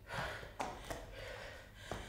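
A woman's breath between exercise reps, one short airy intake, with a couple of faint clicks.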